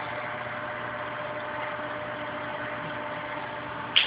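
Steady hum and hiss of running reef aquarium equipment, with a few faint steady tones running through it.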